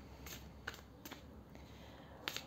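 A few faint, light clicks, about three in the first second or so, over quiet room tone.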